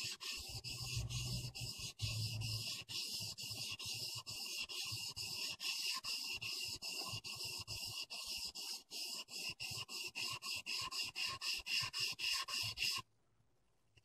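Steel clipper blade rubbed back and forth on a 1000-grit sharpening waterstone with light pressure: an even scraping rhythm of about three strokes a second, grinding the blade flat and forming a new edge on its teeth. The strokes stop suddenly about a second before the end.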